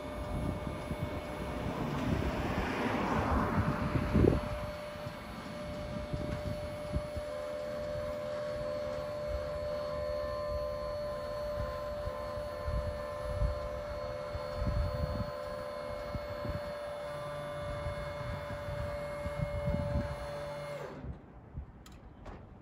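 The electric hydraulic pump motor of a JLG 10RS electric scissor lift whines steadily as the platform is raised, then cuts off suddenly about a second before the end. Wind buffets the microphone throughout.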